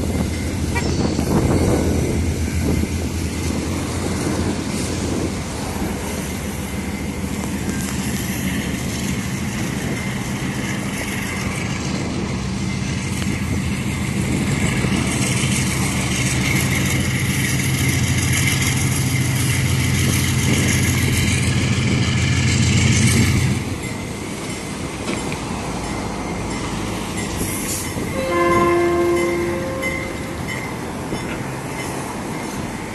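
GE C39-8P diesel-electric locomotives running as they move slowly while switching, their engines working steadily and then easing off about three-quarters of the way through. Near the end a locomotive horn sounds one short blast of about a second and a half.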